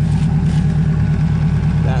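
C8 Corvette's mid-mounted V8 idling steadily as it warms up after an oil change, a low, evenly pulsing rumble heard from underneath the car.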